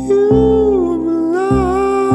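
Slow avant-folk song: a male voice enters with a long held note that sags in pitch and comes back up. Underneath it, Wurlitzer 200A electric piano chords are struck every half second to second.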